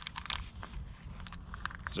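Crinkling and rustling of an energy gel sachet and the running top's fabric as the gel is pushed into a chest pocket: a run of short crackly clicks, busiest at the start and again near the end.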